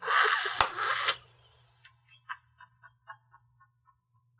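Breathy laughter for about a second, then a faint run of short, high-pitched ticks, about four a second, that die away near the end.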